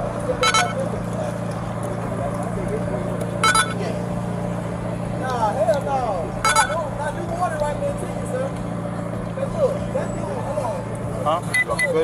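Steady low hum of a vehicle with indistinct voices, broken three times by a short high electronic beep about every three seconds.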